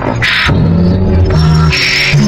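Loud music: held bass notes with two short percussive noise hits, one shortly after the start and one near the end.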